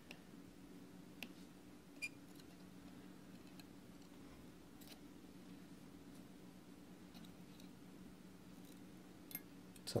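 Quiet room with a steady low hum and a few faint, sharp metallic clicks of steel tweezers tapping and pinching the kanthal coils and posts of a rebuildable atomizer. The clicks come once about a second in, again a second later, and as a quick cluster near the end.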